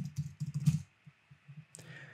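Typing on a computer keyboard: a quick run of keystrokes in the first second, then a single key tap shortly before the end as the typed web address is entered.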